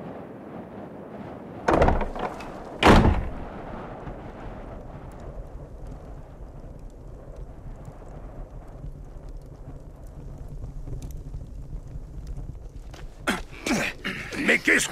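A heavy door being opened: two loud thunks about a second apart, the second the louder, then a low steady rumble.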